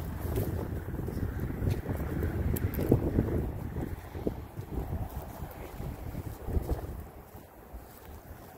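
Wind buffeting the microphone: an uneven, gusty rumble that eases off near the end.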